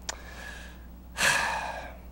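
A man breathing close to a desk microphone during a pause in his speech. A small lip click opens a faint breath, and about a second in comes a louder, sharper breath that fades within a second.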